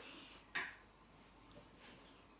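Quiet room tone, broken by one short click about half a second in.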